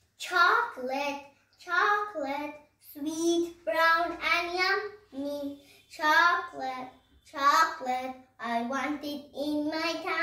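A young girl singing a rhyme alone, without accompaniment, in short phrases with brief pauses between them.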